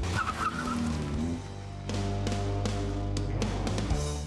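Background music playing over a car pulling away: the 2015 Mini Cooper four-door's engine, with a brief tyre squeal near the start.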